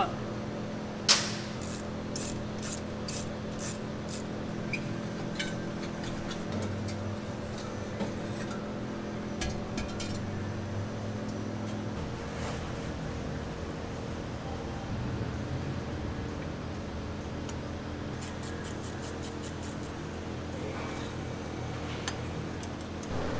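Scattered metal clinks and clicks of hand tools and turbocharger intake parts being loosened and handled, with a sharper click about a second in and a run of quick light ticks near the end, over a steady background hum.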